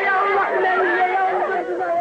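Several people talking at once over one another, a steady chatter of voices.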